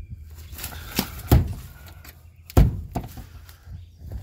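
A few dull thumps with lighter knocks: two deeper thumps a little over a second apart, each near a sharper knock.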